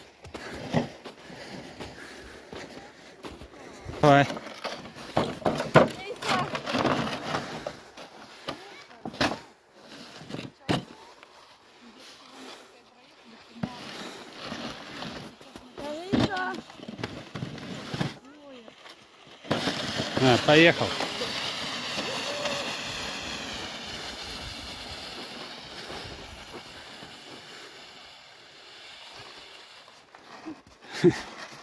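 Scattered voices and short shouts over snow underfoot, then, a little past halfway, a long scraping hiss of a plastic sled sliding over packed snow that slowly fades as it runs away down the slope.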